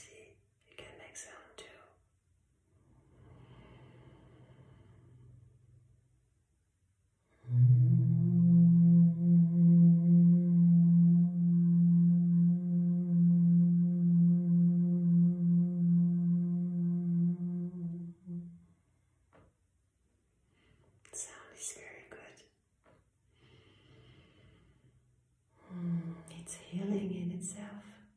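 A woman's voice humming one long, steady meditative note for about ten seconds, starting about seven seconds in. Soft breathy, whispered vocal sounds come before and after it.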